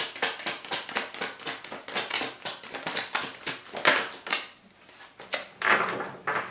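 A tarot deck being hand-shuffled: a rapid run of papery card clicks that stops about four seconds in. Near the end comes a short rustle of cards being handled and laid down.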